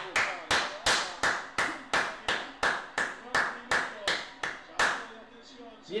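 One person clapping steadily, about three claps a second, for about five seconds, applauding a goalkeeper's save.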